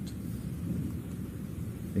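A low, steady rumbling noise, with no clear beat or pitch.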